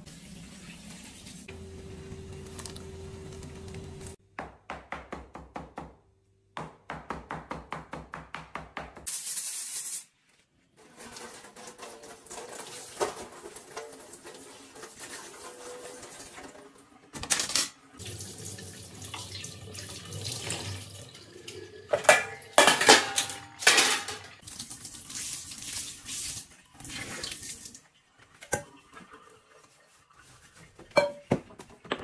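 Kitchen clean-up at a stainless-steel sink: tap water running and a steel pot knocking and scraping against the sink, loudest in a cluster of clanks in the second half. Earlier there is a stretch of quick, regular knocking strokes, about four a second.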